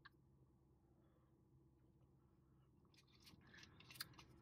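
Near silence inside a car cabin, with a few faint clicks and rustles near the end and a sharper click at the very end.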